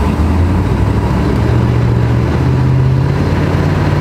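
Chevrolet El Camino's 454 big-block V8 running on the road, its note rising in steps as it speeds up. It runs rough, which is first put down to the engine being cold and later to too much fuel from a stuck carburettor float.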